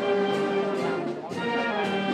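A brass band playing, brass instruments to the fore in held chords.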